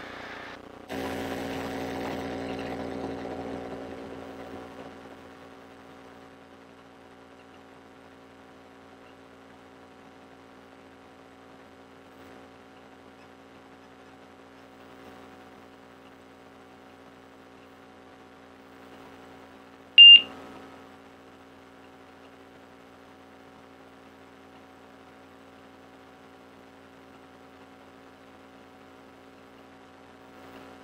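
Light aircraft's engine heard through the headset intercom during the takeoff run and climb-out: a steady low hum with several pitched lines, louder for the first few seconds at takeoff power, then settling to a faint even drone. About twenty seconds in comes a single short, high beep, the loudest sound here.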